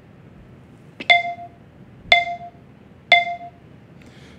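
iMovie for iPad's voiceover countdown: three short beeps a second apart, all at the same pitch, each a clear tone that rings down briefly, signalling that voice recording is about to begin.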